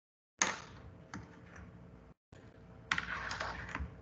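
A few sharp clicks and light taps at a computer, heard through a video-call microphone that lets sound in about half a second in and cuts it to dead silence for a moment just after two seconds.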